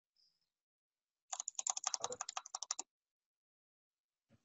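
Quick burst of typing on a computer keyboard, a rapid run of key clicks lasting about a second and a half, starting about a second in.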